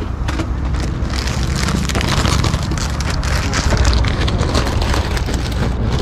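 Clear plastic bag crinkling and rustling as hands handle it close to the microphone: a dense run of crackles over a low rumble.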